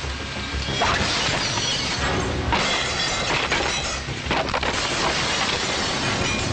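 Film fight sound effects: glass shattering in several crashes over background music.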